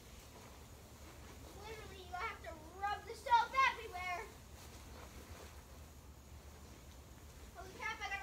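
A young child's voice, high and wavering, for about two seconds near the middle and briefly again near the end, over a faint low steady hum.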